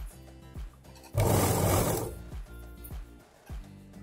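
Background music with a steady beat; about a second in, a loud burst of under a second from a domestic sewing machine running a few stitches through the fabric.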